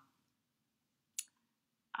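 Near silence with a single short, sharp click a little past halfway.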